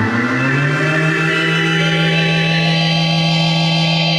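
Moog analog synthesizer sounding one low, buzzy sustained note that glides upward in pitch during the first second, then holds steady while its tone gradually brightens.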